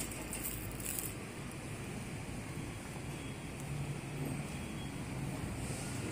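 Plastic wrap on a roller's drum scraper rustling under a hand for about the first second, over a steady outdoor background rumble.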